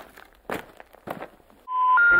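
A few short, sharp taps, then about a second and a half in a steady beep begins: the first of the three rising telephone intercept tones (special information tones) that come before a recorded 'number has been changed' announcement.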